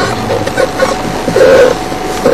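Game-drive vehicle's engine running, with short, indistinct sounds over it.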